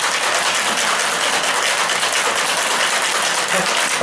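Ice cubes rattling rapidly inside a stainless steel cocktail shaker being shaken hard, a dense, steady clatter.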